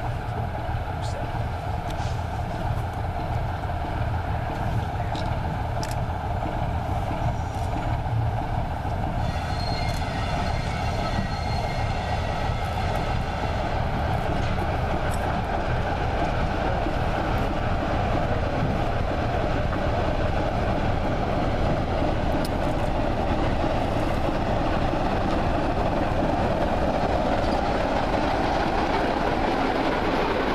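Class 24 diesel locomotive D5081 running as it approaches hauling its coaches, a steady rumble that grows louder as it draws near and passes close by. A faint high whine joins about a third of the way in.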